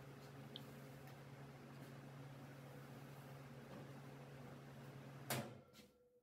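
Near silence: a faint steady low hum, with one brief knock about five seconds in.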